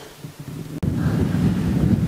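Faint indoor room hum, then, a little under a second in, an abrupt switch to a loud, steady low rumble of wind on the microphone.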